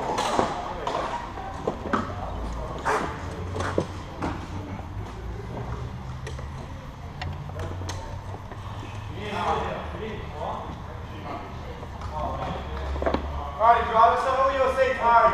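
Go-kart engine running at low speed, a steady low hum from about two seconds in, with a few sharp knocks in the first few seconds.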